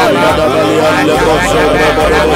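Several men praying aloud at the same time, their voices overlapping into a loud, continuous babble of fervent prayer. A low hum comes and goes underneath.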